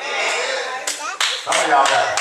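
Congregation clapping in a steady quick rhythm, about four claps a second, starting about a second in, with a man's voice over it.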